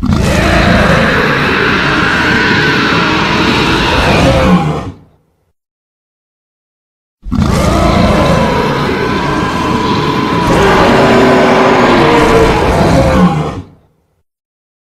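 Giant-ape monster roar, a sound effect mixed from film monster roars, heard twice: one call of about five seconds, then a two-second silence, then a second call of about six seconds.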